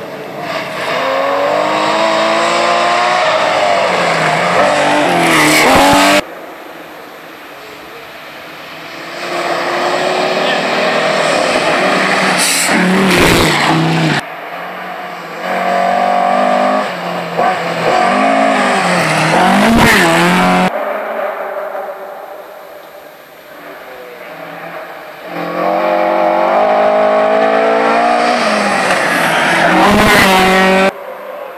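Historic rally cars driven flat out on a gravel stage, one after another: engines revving hard and climbing in pitch through the gears, with tyres crunching and spraying gravel as each car comes past. The sound breaks off suddenly between cars about three times.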